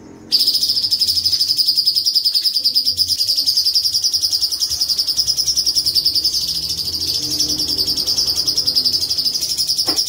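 Cucak cungkok leafbird singing a long, fast rolling trill on one high pitch. It starts suddenly just after the opening and keeps an even, rapid pulse.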